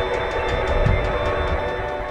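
Dozens of electric guitars through portable amps playing together: a dense, sustained mass of chord tones over a fast, even strummed pulse. It begins to fade out near the end.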